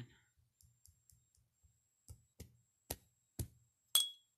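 A run of small clicks and taps, faint at first, then a handful of sharper clicks about half a second apart in the second half. The last and loudest has a brief ringing tone.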